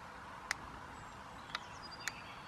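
A few faint, sharp clicks about a second apart over a quiet outdoor background: the control sticks of a 40 MHz radio control transmitter being moved. The sticks stay where they are pushed instead of springing back to centre.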